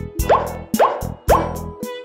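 Three short, rising cartoon plop sound effects about half a second apart, over children's background music with a steady beat.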